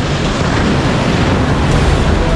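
Tunnel boring machine's cutter head grinding through the concrete wall at breakthrough: a loud, rough rumble of rotating cutters crushing concrete and rock.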